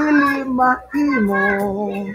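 A singer holding long notes of a Visayan song a cappella: one held note, a short break for breath, then a note that steps down to a lower pitch and is held.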